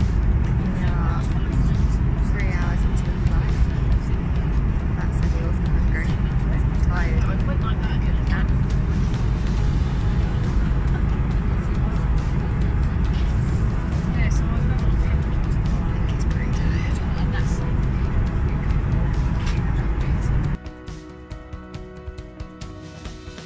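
Loud, steady low roar of an airliner's cabin, engine and air noise, with faint voices over it. It cuts off suddenly near the end and music takes over.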